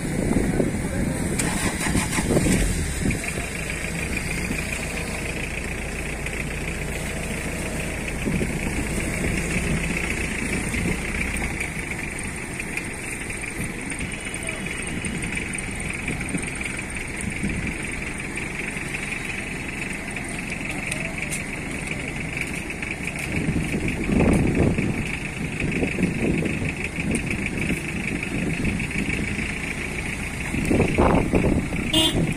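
A motor vehicle's engine running nearby, its low hum stopping about a third of the way in, with a steady high-pitched whine in the background.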